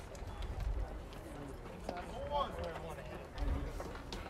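Ballfield ambience: a low, uneven rumble of wind on the microphone, with a faint voice calling out on the field about two seconds in.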